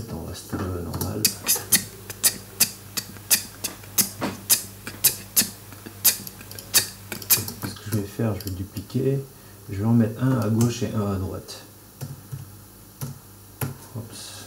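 Playback of a sparse kizomba beat being built in a music program: crisp hi-hat ticks about three a second for several seconds, then a stretch of chopped voice samples past the middle.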